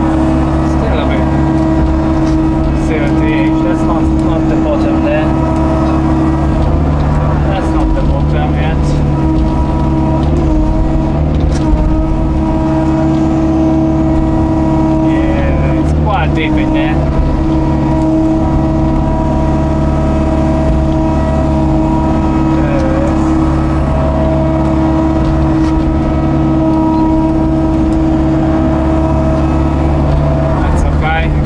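Hitachi excavator's diesel engine and hydraulic pump running steadily under working load, heard from the cab, as the bucket digs and lifts wet mud. A few clunks from the bucket and arm, the loudest about twelve seconds in.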